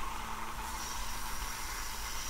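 Narrow belt sander grinding the edge of two screwed-together brass plates, taking them down to the marked line: a steady, even abrasive rasp, with a faint thin high tone joining partway through.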